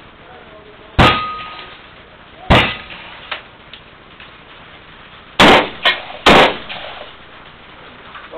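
Four loud gunshots from a long gun fired out of a shed window: two about a second and a half apart, then a pause, then two close together. A short metallic ring follows the first shot.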